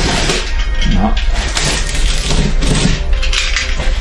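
A box cutter slicing through packing tape and cardboard on a shipping box, in a series of short scratchy strokes, over background music.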